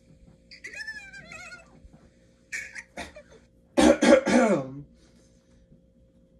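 Cartoon puppy's barking voice from the TV soundtrack: a wavering, yelping call, then a few short barks, and a louder, hoarse burst of barks falling in pitch about four seconds in.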